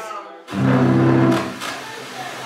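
A low musical note starts suddenly about half a second in and is held at a steady pitch for about a second before fading.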